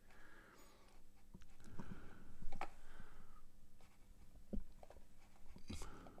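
A few scattered clicks and taps, typical of a computer mouse and keyboard being worked, over a faint steady hum.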